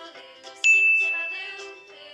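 A single bright bell-like ding strikes about two-thirds of a second in and rings out, fading over about a second, over light cheerful background music.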